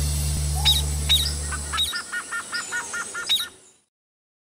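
Birdsong: several short falling chirps, then a quick run of repeated short notes, over a low held note that stops about two seconds in. It fades out just before the end.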